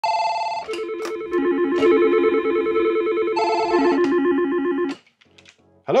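Desk telephone's electronic ringtone: a short melodic phrase that plays, starts again about three seconds later, and stops about five seconds in.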